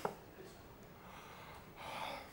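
A drinking glass is set down on the table with a short sharp knock right at the start. Near the end comes a man's breathy gasp, the exaggerated exhale of someone who has just downed a drink.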